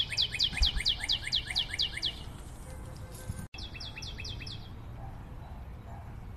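A bird chirping in quick runs of high, falling notes, about six a second: one run of about two seconds, then after a short break a second, shorter run about halfway through.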